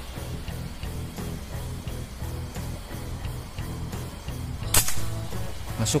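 A single shot from a Predator Tactical 500cc PCP air rifle with a regulator and suppressor: one sharp crack about three-quarters of the way through, over steady background music.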